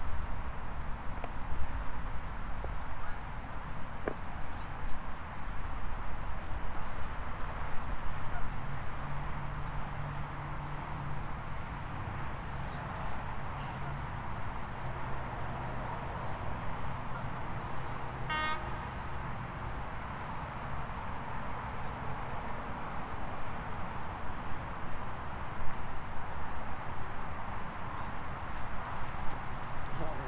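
Steady outdoor background noise with a low rumble, a low hum through the middle, and one short honk about eighteen seconds in.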